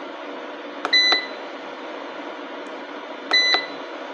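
Two short electronic beeps from a Homage solar inverter's control-panel keypad, about two and a half seconds apart, each framed by the click of a push-button pressed and released. The key beep confirms each press as the settings menu steps to the next item.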